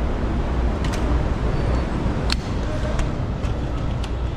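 Steady low rumble of a vehicle inspection hall, with a few sharp clicks or knocks, the loudest a little past the middle.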